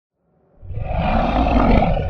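Sound effect for an animated logo intro: a loud rushing swell with a deep rumble, starting about half a second in and building toward the end.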